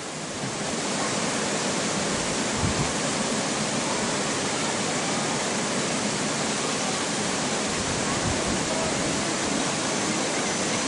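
Steady rush of water from a creek and waterfall.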